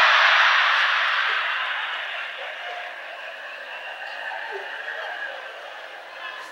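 Live audience laughing and applauding. The sound is loudest at the start and dies away over several seconds.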